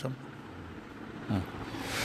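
A short pause in a man's narration: faint steady background noise with a low hum, and a brief low vocal sound about a second and a quarter in.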